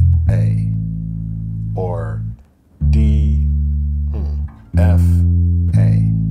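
Electric bass guitar playing single notes of a D minor triad one at a time, each left to ring. One note rings from the start and is stopped short before halfway; new notes are plucked just past halfway, near the end, and at the very end.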